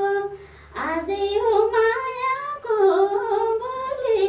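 A woman singing unaccompanied. She holds long notes with small ornamental turns and takes a short breath about half a second in.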